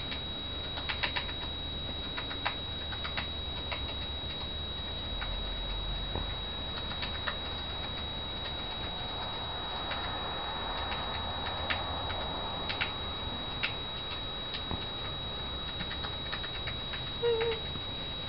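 Faint, scattered clicks and light rustling as a baby mouse is handled in cupped hands, over a steady hiss with a faint high whine.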